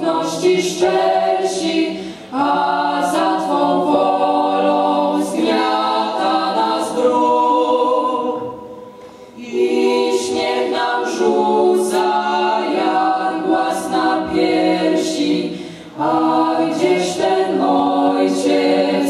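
A teenage vocal ensemble singing a slow song a cappella in several-part harmony. Phrases break off for a breath about two seconds in, for a longer gap around eight to nine seconds, and again near the end.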